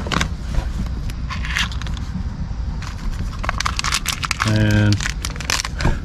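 Papers rustling and crinkling with light clicks and knocks as hands dig through a tote of personal papers and used lottery tickets, with a short voiced sound about four and a half seconds in.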